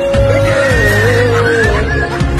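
Background music: a sustained, wavering melody line over a steady heavy bass.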